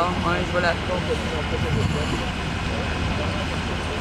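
Steady low rumble of a vehicle engine idling, with a few words of talk in the first second.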